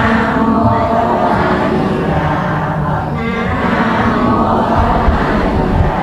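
A large group of people chanting prayers together in unison, a steady, continuous mass of voices.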